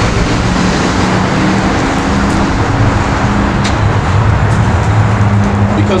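Road traffic: a motor vehicle's engine running nearby, a low drone that shifts in pitch, over steady traffic noise. A single sharp click about three and a half seconds in.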